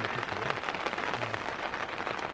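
Heavy rain pattering steadily on a tent, a dense even patter of drops.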